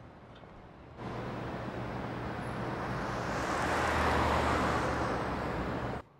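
Car passing on a city road: tyre and engine noise starts suddenly about a second in, swells to a peak and then cuts off sharply.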